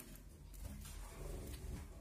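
Gouldian finches in a cage giving faint, soft calls.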